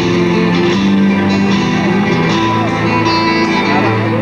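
Live band music with guitar to the fore, over held chords.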